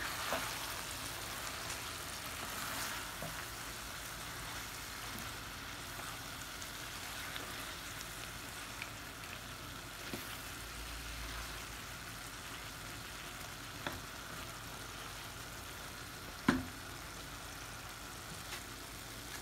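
King prawn curry with aubergine and potato sizzling steadily in a frying pan while a wooden spoon stirs it. There are a few sharp knocks of the spoon against the pan, the loudest a little over three-quarters of the way through.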